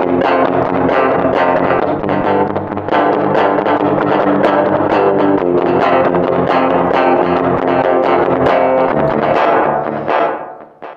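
Recorded electric guitar part playing back through Studio One's Pedalboard effects chain: a delay pedal feeding a reverb pedal, then a Tube Driver overdrive pedal.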